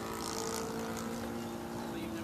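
Four-stroke YS 150 model glow engine of a radio-controlled airplane in flight, running with a steady, even drone.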